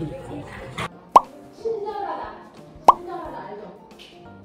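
Two short, sharp plopping pops, alike and about 1.7 s apart, with faint voices between them.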